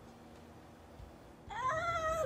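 Quiet room tone, then about a second and a half in a woman's high-pitched, drawn-out "ah" of delight.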